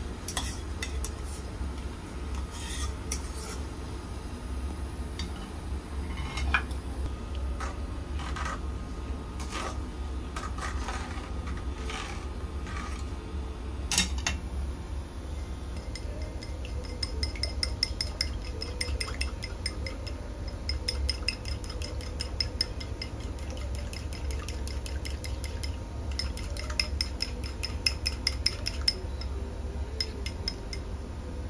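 Metal ladle scraping and clinking against a small metal bowl and a metal pot of broth, in irregular taps and scrapes. Then, about halfway through, chopsticks beating egg in a ceramic bowl: rapid, even clicking that runs to the end. A low steady hum sits underneath.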